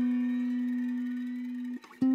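McCafferty-Seifert model mountain dulcimer: a single low plucked note ringing and slowly fading, damped shortly before the end as the next note is about to sound.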